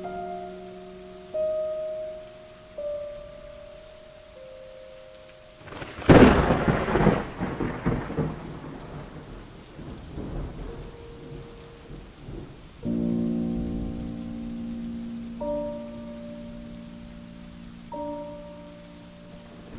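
A sudden loud thunderclap about six seconds in, rumbling away over the next several seconds over steady rain. Slow, soft instrumental melody notes play before it and come back near the end.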